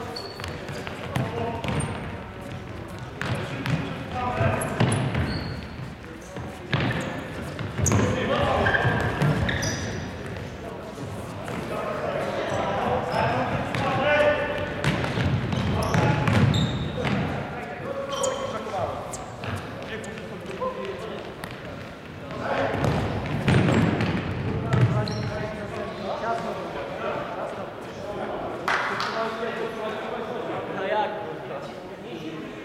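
Futsal being played in an echoing sports hall: players' shouts and calls mixed with repeated thuds of the ball being kicked and bouncing on the wooden floor.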